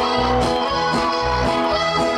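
Live band playing an instrumental passage between verses, an accordion holding sustained chords and melody over guitars and a steady, repeating bass line.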